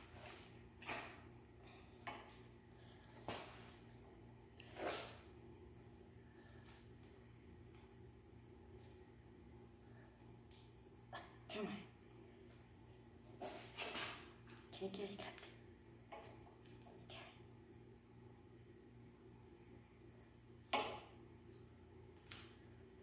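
Faint, scattered rustles and clicks of duct tape being handled and pressed onto a push mower's metal handle, about ten short sounds with the loudest near the end, over a steady low hum.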